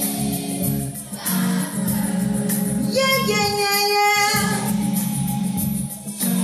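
A woman singing a gospel song over a recorded backing track, with choir voices singing along. About three seconds in, one long note is held with a wavering vibrato.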